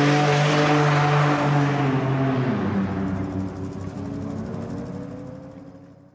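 Twin-turbo BMW M4's straight-six engine revving up and held steady on the drag strip, then accelerating away with a rising pitch as its sound fades into the distance.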